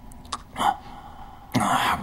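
A man's short coughs and ragged breaths from an exhausted, badly hurt fighter, with a harsh, loud cough-like burst near the end.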